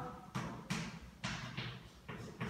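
Chalk knocking against a blackboard while a word is written: four short sharp taps, about two a second, each with a brief ring.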